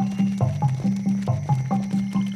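Background cartoon music: a low bass line stepping up and down between notes under quick, short, evenly spaced higher notes, like a plodding walking tune.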